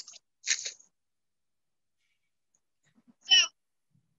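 A sharp sword cutting through a plastic water bottle on a post, heard over a video call: a short sharp hit right at the start and a second brief noise about half a second later. A louder short sound follows about three seconds in.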